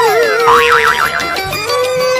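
Background music with cartoon sound effects over it: a whistle sliding down in pitch at the start, then a quick wobbling boing.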